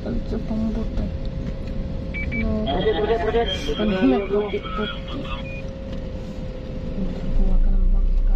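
Road noise heard from inside a moving car, with a person's voice talking over it for a couple of seconds in the middle. The low rumble grows louder near the end.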